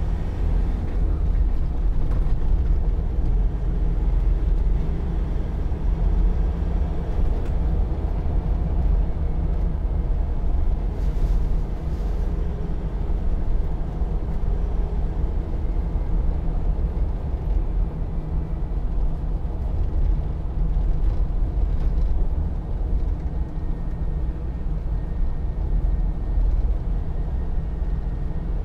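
Land Rover Defender 90's 2.2-litre four-cylinder turbodiesel pulling the vehicle along at a steady speed, heard from inside the cabin as an even low drone mixed with road and wind noise.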